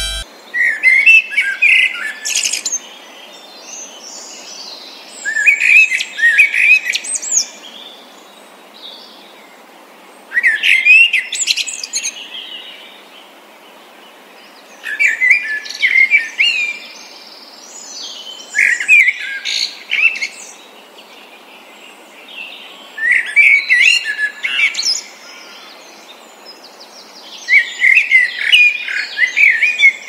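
A bird singing short bursts of chirping song, seven phrases each lasting about two seconds and repeated every four to five seconds.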